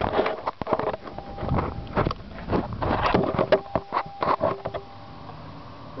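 A red plastic gas can being handled, its cap worked loose, giving a run of irregular clicks and knocks.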